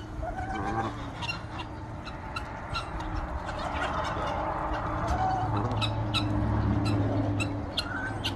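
A tom turkey in full strut making its calls, with a low steady hum for about two seconds past the middle. Many short sharp ticks run beneath it as the flock feeds.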